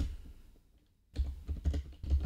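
Typing on a computer keyboard: a quick run of keystrokes that starts about a second in.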